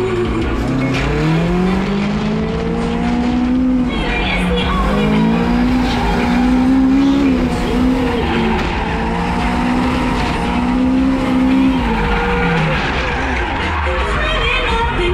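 Toyota AE86 Corolla's BEAMS-swapped four-cylinder engine under hard throttle while drifting, revs climbing and falling back three times as the car is driven through corners.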